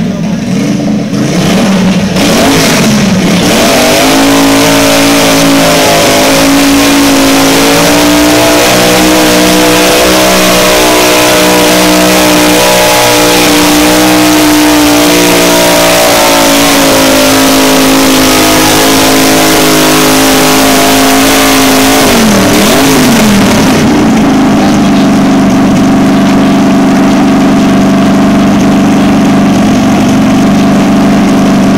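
Garden tractor engine revving up and held at high revs under load while pulling a weight-transfer sled. About 22 seconds in, the revs drop to a steady idle as the pull ends.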